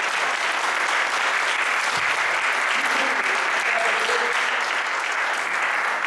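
Audience applauding steadily, with a voice faintly heard through it about three seconds in.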